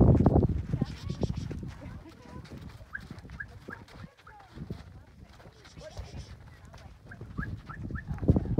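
Camel caravan on the move: a loud low sound fades over the first second. Then come quieter scattered sounds and faint distant voices, with a few short high chirps.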